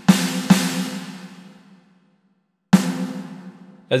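Roland TD-17 electronic drum module's snare sound struck twice in quick succession, then once more nearly three seconds in. Each hit is followed by a long fading reverb tail from the module's Sports Arena ambience set to a huge room, the first hits with the plaster wall type.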